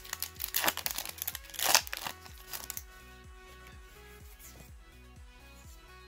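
A Yu-Gi-Oh booster pack's foil wrapper crinkling and being torn open, with the loudest rip about two seconds in, over soft background music that carries on alone for the last three seconds.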